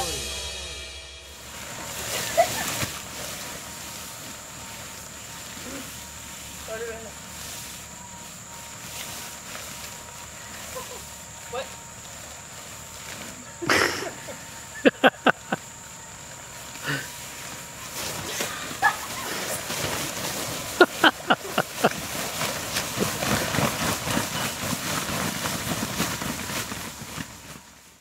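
People's voices over a steady, faint, high-pitched whine, with groups of sharp clicks in quick succession about fourteen seconds in and again about twenty-one seconds in; the sound fades out at the end.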